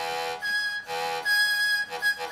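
Yoshimi software synthesizer playing sustained notes driven by breath pressure on a homemade bidirectional breath sensor, which is working as a MIDI wind controller. The notes alternate between a lower and a higher pitch, four notes in all.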